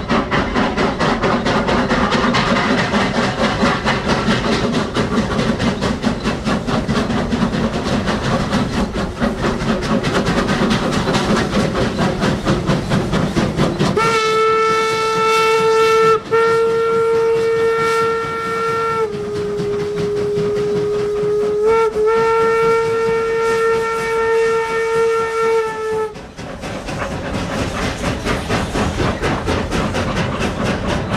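Two 1875 wood-burning steam locomotives working hard up a steep grade, their exhaust chuffing quickly and heavily. About halfway through a steam whistle sounds in long blasts for the highway crossing, dropping briefly to a lower pitch in the middle, and then the hard chuffing carries on as the train passes.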